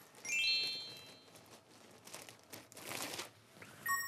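A short rising chime-like sound effect just after the start, plastic bag crinkling around three seconds in, and a bell-like chime sound effect ringing near the end.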